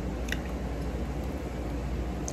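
Steady low hum of a small restaurant's room noise, with a short click about a third of a second in as noodles are lifted with chopsticks.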